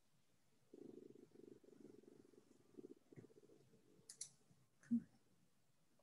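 Near silence with a faint low buzz for a few seconds, then a few short clicks, the sharpest near the end, from a computer mouse being clicked to start a PowerPoint slideshow.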